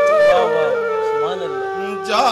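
Bansuri, a side-blown bamboo flute, playing a melodic line with sliding notes and settling into a long held note that breaks off suddenly at the end.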